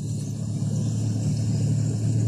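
An engine running steadily, a low, even hum that grows a little louder.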